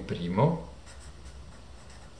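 Pen writing on paper: a few short, faint scratching strokes as letters are written.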